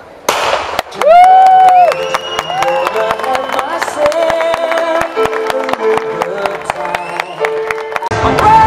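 A starting pistol fires once about a third of a second in, a sharp bang with a short echo. Music with held notes follows, over a crowd clapping and cheering as the race gets under way.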